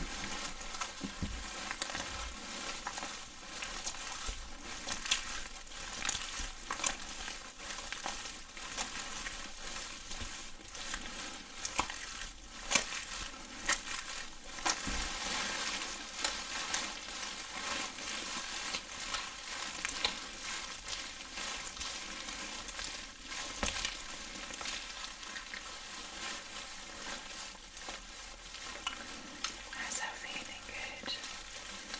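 Gloved hands making wet rubbing and squishing sounds, a continuous crackle full of small sticky clicks.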